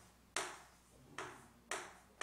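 Chalk tapping against a chalkboard while writing: three sharp taps, the first the loudest, each followed by a short echo.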